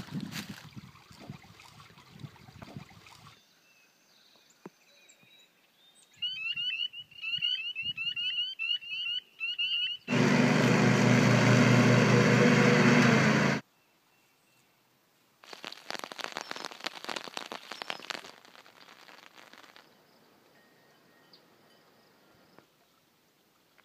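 A riding lawn mower's engine runs steadily for about three and a half seconds, the loudest sound here, and cuts off suddenly. Before it comes a few seconds of repeated quick chirps, like bird song. Water splashing in a shallow stream is heard near the start.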